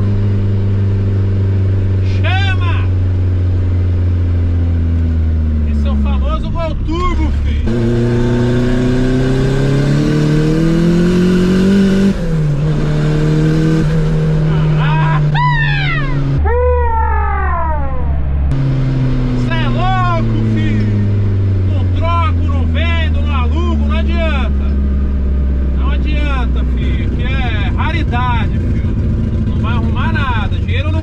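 Turbocharged VW Gol's engine heard from inside the cabin under hard driving. The engine note holds steady, breaks off, climbs in pitch through the gears with short breaks at the shifts, then falls slowly as the car slows. The driver lets out loud yells around the middle.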